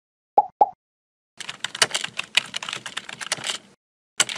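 Two short bubbly pops about half a second in, then a rapid run of computer-keyboard typing clicks lasting about two seconds: animation sound effects as dots pop up and text is typed into a search bar.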